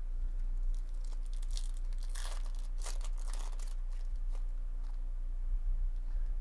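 Wrapper of a Bowman baseball card pack torn open and crinkled, starting about a second in and lasting a couple of seconds, followed by a few faint ticks as the cards are handled.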